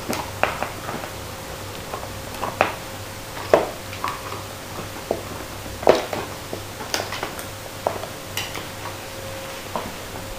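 Two dogs gnawing large bones on a hard floor: irregular clicks and knocks of teeth on bone and of the bones bumping and scraping on the floor, the loudest knocks about three and a half and six seconds in. A faint steady hum runs underneath.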